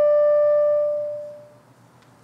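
Clarinet holding a single sustained note that fades out about a second and a half in.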